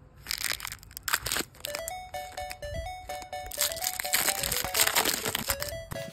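A Pokémon booster pack's foil wrapper crinkling and tearing as it is ripped open and handled, in repeated crackly bursts. Light background music with a simple stepping melody comes in after about two seconds.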